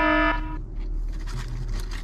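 An alarm beeping at an even pace, a buzzing tone of steady pitch; the last beep stops about half a second in.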